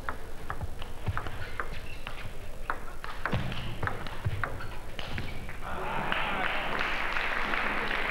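Table tennis rally: the ball clicks off rubber bats and the table in quick, irregular succession for about five seconds. Crowd applause then swells as the point ends.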